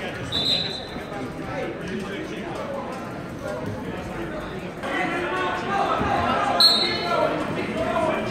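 Referee's whistle blasts in a gym: a short, faint one about half a second in and a brighter, louder one near the end, as the wrestlers restart. Many voices from the crowd and corners fill the hall, growing louder in the second half.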